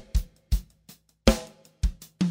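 Acoustic drum kit with Diril cymbals played in a sparse groove: a handful of separate kick, snare and cymbal strokes with short silent gaps between them.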